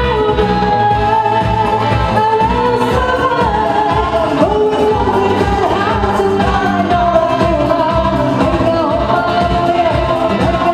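A woman singing a pop song into a microphone, holding long notes, backed by a live band with bass guitar and a steady beat.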